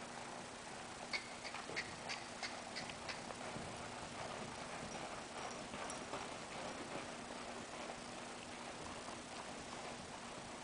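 Faint hoofbeats of a ridden horse moving around an indoor arena on sand footing, with a run of sharper clicks in the first few seconds.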